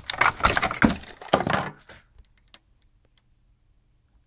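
Sheet-metal shielding cover being pulled off an electronics module: metal clicking and clattering for about two seconds, then a few faint ticks.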